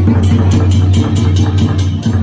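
Dragon dance percussion: a drum beating steadily under cymbals clashing about four to five times a second.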